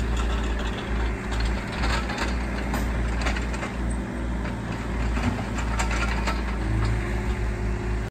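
Diesel engine of heavy digging equipment running at a steady speed, with scattered sharp clanks and knocks.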